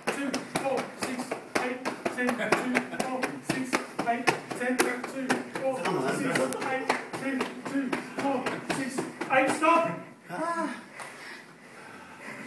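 Rapid bare-fist punches landing on a man's chest, about three to four a second in a steady run that stops near the end, with voices and laughter behind.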